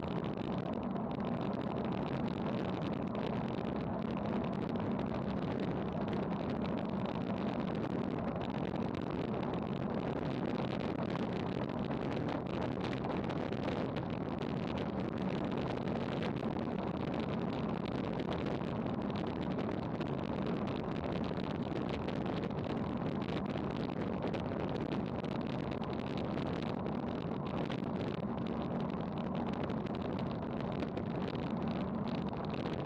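Steady rush of wind over a bike-mounted action camera on a road bicycle descending at about 30 mph, mixed with tyre and road noise.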